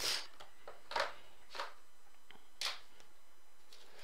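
Sealed trading-card packs being flipped over and handled on a tabletop: about four brief rustling swishes, roughly a second apart.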